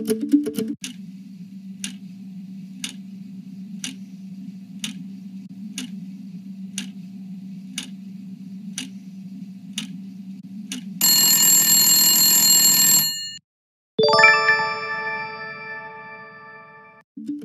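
Game-show countdown timer sound effect: a tick about once a second over a low steady drone, then a loud alarm-like buzzer lasting about two seconds as time runs out. After a brief silence a bright chime rings out and fades, marking the correct answer being revealed.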